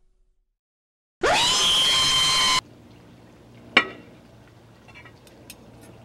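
A loud tone that sweeps up quickly in pitch and holds steady for about a second and a half, then cuts off abruptly; a single sharp click follows.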